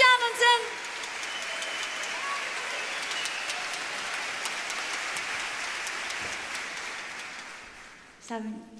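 Concert-hall audience applauding, a steady patter of many clapping hands that fades out near the end. A voice's last phrase ends about half a second in.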